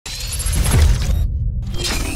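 Intro logo sting sound effect: it starts suddenly and loud, with a deep rumble underneath bright high-pitched noise that drops out briefly just past a second in and then comes back.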